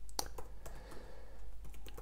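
Typing on a laptop keyboard: a run of irregular key clicks.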